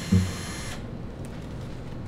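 Cordless power drill running with a high whir that stops under a second in, over a short, deep vocal sound near the start. After that only a low background hum is left.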